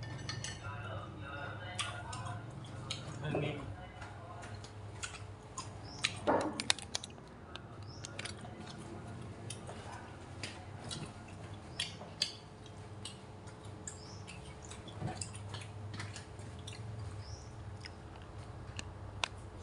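Scattered light clicks and knocks of things being handled, with brief faint voices in the first few seconds and again about six seconds in.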